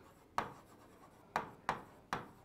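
Marker writing on a board: three short, sharp strokes about half a second, a second and a third, and a second and three-quarters in, as a word is written out.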